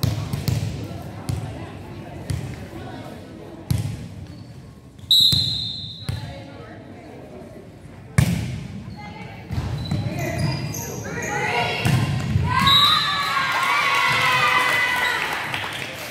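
A volleyball being served and played in a reverberant gymnasium: several sharp ball-contact smacks, the loudest about five and eight seconds in, with sneakers squeaking briefly on the hardwood. Players shout and call out over the second half.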